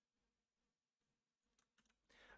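Near silence: the microphone is essentially gated off.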